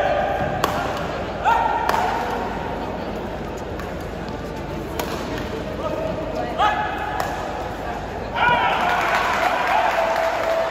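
Badminton rally: sharp cracks of rackets striking the shuttlecock a second or more apart, with court shoes squeaking on the court floor in short, flat-pitched squeals, the longest near the end.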